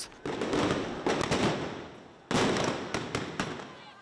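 Two loud bangs about two seconds apart, each trailing off slowly in a long echo, from crowd-control munitions fired at street protesters amid tear gas.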